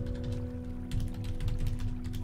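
Typing on a computer keyboard: a run of key clicks that pauses briefly early on and then picks up again, over soft background music whose held chord is fading out.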